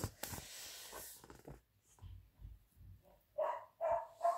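A paper page of a picture book being turned, a rustle in the first second. Near the end, a few short barks from dogs in the background.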